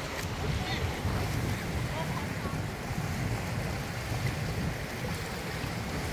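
Small sea waves washing steadily over and around rock shelves at the shoreline, with wind buffeting the microphone as a low rumble.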